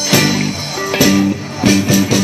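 Live rock band playing with electric guitars and drums, in an instrumental passage without singing.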